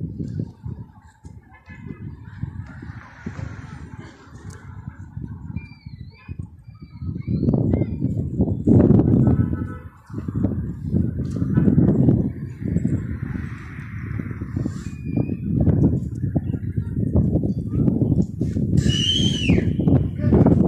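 Gusty wind buffeting a phone's microphone in an irregular low rumble, heavier in the second half, with a few short high bird chirps and a falling high note near the end.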